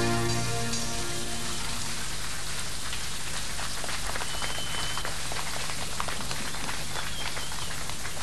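A sustained keyboard chord ending the song dies away over the first second or so, then a studio audience applauds steadily.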